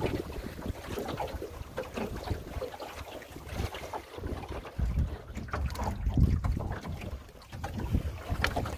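Wind buffeting the microphone in uneven gusts, heaviest past the middle, over irregular splashes of choppy water against the hull of a small sailboat under way, a Drascombe Lugger.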